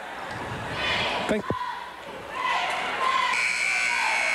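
Crowd and cheerleader voices in a busy school gymnasium, with a sharp clap or knock about a second and a half in. Near the end a steady, high-pitched buzzer-like tone starts and holds.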